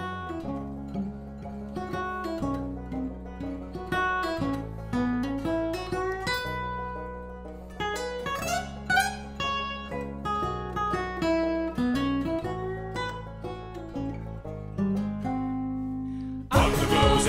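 Cutaway steel-string acoustic guitar picking a quick melodic solo line over held low notes, in a folk song's instrumental break.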